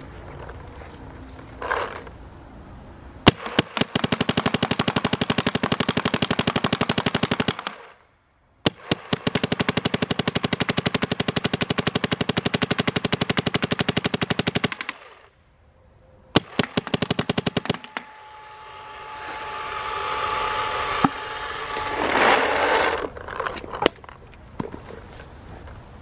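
Empire Axe 2.0 electronic paintball marker firing in ramping mode: three rapid, machine-gun-like strings of shots, the first about four seconds long, the second about six, and a short third one. In the last third a swelling rushing sound with a steady tone rises and peaks before fading.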